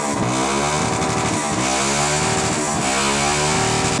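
Suzuki Gixxer SF race bike's single-cylinder engine, revved on a rear-wheel stand, with its pitch climbing, dropping back and climbing again about three times.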